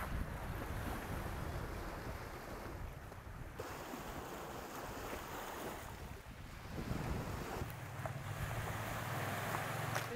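Sea surf washing against the shore with wind buffeting the microphone: a steady rush with a low rumble. The sound changes abruptly about a third of the way in, and again near the end.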